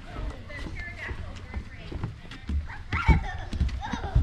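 Footsteps on a hard path, quick and irregular, with a few heavier thumps about two and a half to three seconds in, over indistinct voices.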